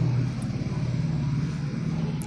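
A steady low rumble with a faint hiss behind it, slowly fading.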